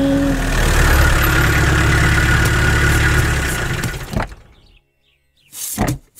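A car engine running steadily with a low rumble, fading out about four seconds in. A single sharp click follows, then a short loud burst near the end.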